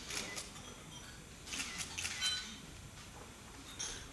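Quiet room with scattered sharp clicks and light clinks, bunched together about one and a half to two and a half seconds in, a few with a brief ringing tone.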